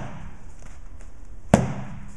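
One sharp smack about one and a half seconds in as the Mineral Mountain Stick-It 2 knife snaps against a vinyl punching mitt. It is a snap cut that does not bite deep into the pad.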